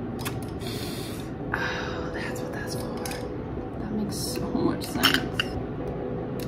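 Clicks and light rattles of a plastic microphone shock mount and boom-arm parts being handled and fitted together, with short rustles about one and two seconds in.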